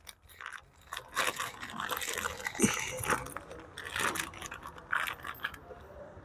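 Plastic bag and bubble wrap crinkling and rustling irregularly while a new coolant reservoir cap is pulled out of the packaging. It starts about a second in and dies away near the end.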